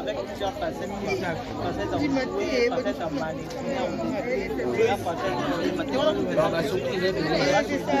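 Speech only: a woman talking animatedly, with other voices around her.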